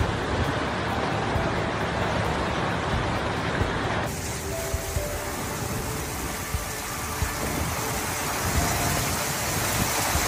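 Heavy rain and floodwater making a steady hiss, with faint music underneath. The sound changes abruptly about four seconds in, where the footage switches to a different flooded street.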